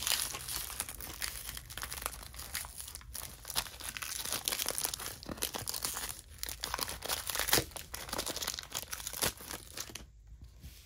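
Foil wrapper of a Pokémon TCG booster pack crinkling as it is torn open and peeled back from the cards, with a sharp crackle about three quarters of the way through.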